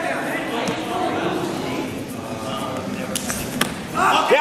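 Wrestlers scuffling on a gym mat: a few sharp knocks, slaps or shoe squeaks about three seconds in, over a steady murmur of faint background voices in a large hall.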